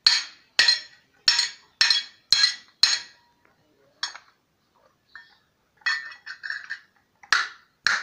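Hand hammer striking a small steel piece held on a steel block, ringing metal-on-metal blows about twice a second. After a pause there are lighter metallic clinks, then two more blows near the end.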